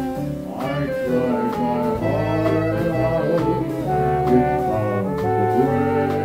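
A small jazz dance band playing a ballad: trumpet, trombone and saxophones hold chords over piano, bass and drums keeping time.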